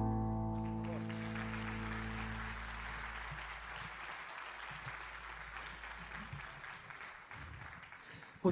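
The band's last chord, led by piano, rings out and dies away over the first few seconds while audience applause starts about a second in and slowly fades.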